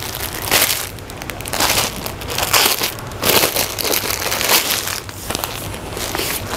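Clear plastic garment packaging crinkling and rustling in irregular bursts as a packed kurti is handled and unwrapped.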